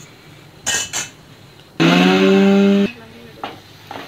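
A metal spatula clinks against a steel kadai as fried curry leaves are stirred. Then a mixer grinder runs steadily for about a second, grinding the leaves, and cuts off abruptly.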